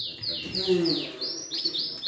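Caged domestic canaries singing: a quick run of repeated falling whistled notes, about four a second, that changes about halfway through to short rising-and-falling notes.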